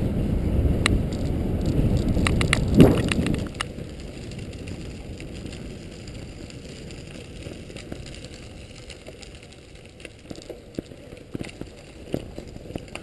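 Wind buffeting the microphone of a camera on a moving bicycle, loud and rumbling. About three and a half seconds in it cuts to a much quieter ride on a gravel path, with bicycle tyres crunching and scattered small clicks.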